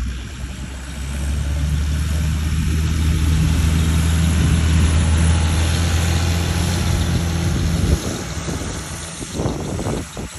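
Farm tractor's engine running steadily as it drives past close by. It grows louder about a second in and drops away sharply near the end, over beach wind and surf.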